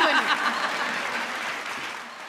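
Studio audience applauding, the clapping gradually fading over the two seconds.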